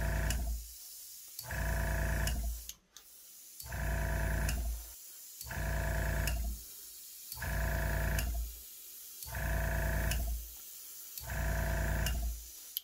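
Small airbrush compressor motor switching on and off in bursts of about a second, roughly every two seconds, seven times, as the airbrush sprays paint. A fainter hiss of air fills the gaps between bursts.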